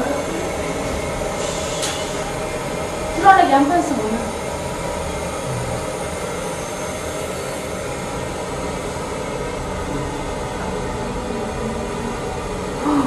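Whole-body cryotherapy cabin running, a steady hiss of its chilling air flow as the chamber cools toward minus 160 degrees. A short voice cuts in about three seconds in.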